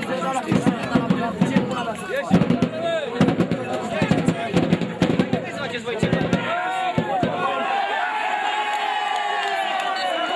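Players and spectators shouting during play at an amateur football match, many voices overlapping, with sharp knocks and claps in the first six seconds. From about seven seconds in the shouting turns into steadier, held calls.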